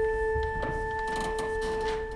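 A single steady organ note, held for about two and a half seconds, giving the pitch for the chanted opening versicle. Faint shuffling and knocks in the church lie beneath it.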